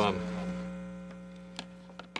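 Steady electrical mains hum on the audio feed, made of several fixed tones, with a faint click near the end.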